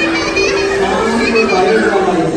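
Speech: voices talking in a large hall.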